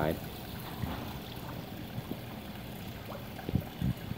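Water from a small indoor pond stream trickling steadily over rocks, with a couple of faint knocks near the end.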